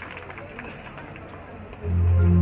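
Spectators murmuring and talking as the applause dies away. Near the end the marching band's music comes in suddenly with a loud, low, sustained note.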